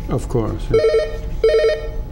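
Telephone ringing: two short trilling rings, each about half a second long, the first starting just under a second in.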